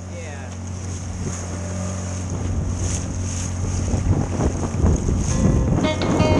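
A small inflatable boat under way through choppy sea: a steady low motor hum under water rushing and splashing along the hull, with wind on the microphone. The splashing grows louder over the last couple of seconds.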